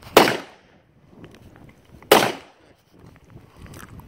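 Two gunshots on an outdoor firing range, about two seconds apart, each a sharp crack with a short tail.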